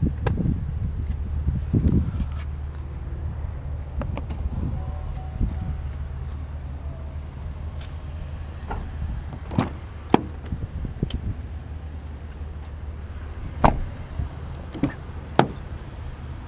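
Steady low rumble with scattered clicks and knocks; a few sharp clicks near the end come as the SUV's front passenger door is unlatched and swung open.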